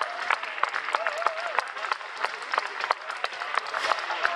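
Audience applauding: a dense, steady run of hand claps, with a voice faintly audible beneath in the first half.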